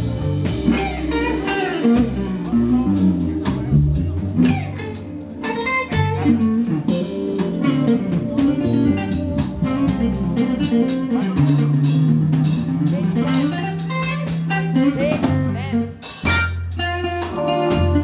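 Live R&B band playing: a guitar lead over keyboard, bass and drum kit, with a shift into sustained chords near the end.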